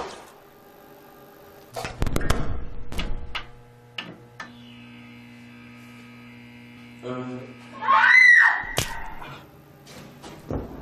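Steady electrical mains hum from band amplification, broken by a sharp crack at the start and a loud electrical crackle about two seconds in, with a few clicks after. Near the end comes a loud scream that rises and then falls in pitch. Together these make the sound of a fatal electric shock from the equipment.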